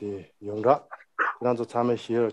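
Speech only: a man talking in Tibetan, with rising and falling intonation.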